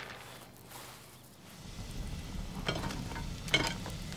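Wood fire crackling in an open hearth, with scattered sharp cracks. It comes in about a second and a half in, after a quiet moment.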